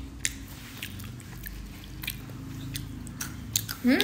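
A toddler chewing close to the microphone: scattered small wet clicks and munching sounds. Near the end comes a short rising "hm".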